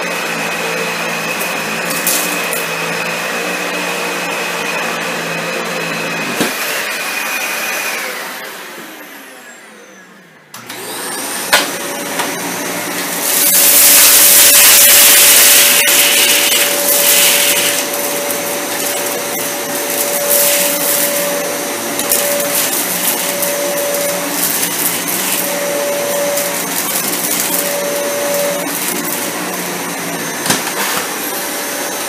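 A Dyson DC65 Animal upright vacuum runs steadily with a high whine, then is switched off about eight seconds in, its motor spinning down with falling pitch. A couple of seconds later a Dyson Cinetic Big Ball upright vacuum starts up and runs on carpet with a steady whine, with a much louder rushing stretch of a couple of seconds around the middle as it sucks up debris.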